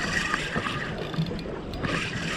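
Steady wash of wind and water around a small boat on open sea, with a spinning reel being wound near the end while a fish is played.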